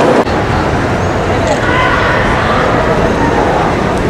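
Crowd chatter cuts off abruptly about a quarter second in, giving way to steady city street traffic noise with a low rumble and a few voices of people talking.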